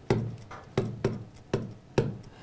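A stylus tapping against the glass of an interactive touchscreen display while handwriting. There are four separate knocks, each about two-thirds of a second apart.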